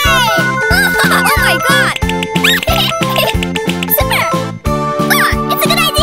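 Children's cartoon background music with a steady beat of about three chord pulses a second, overlaid with short high squeaky cartoon vocal sounds that slide up and down in pitch.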